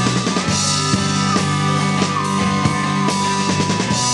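A live rock-electronic band playing: a drum kit keeps a steady beat over sustained bass notes, while a single held high melody note steps between a few pitches.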